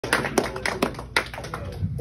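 Scattered applause from a small audience: a handful of sharp, uneven claps, fading out as the comedian reaches the microphone.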